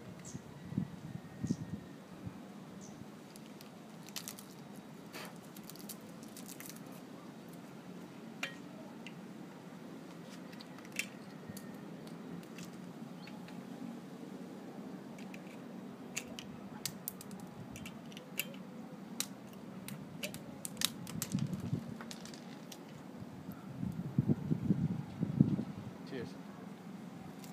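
Scattered small clicks and taps from objects being handled, over a steady low hum. A cluster of louder, uneven low thumps comes near the end.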